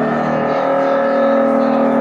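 Loud live band music through a club PA: a distorted chord held steady as one unbroken drone, with the electric guitar among the instruments.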